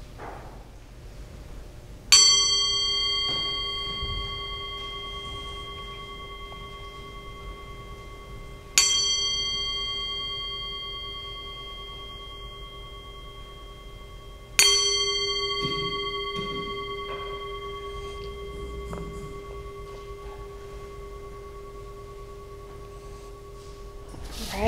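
Brass singing bowl struck three times, about six seconds apart, each strike ringing on in clear steady tones that slowly fade, with a slight waver in the low tone. The third ring marks the end of a one-minute silent meditation.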